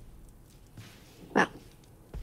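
Quiet room tone in a dialogue scene, broken once near the end by a single short spoken word, a woman's "Well,".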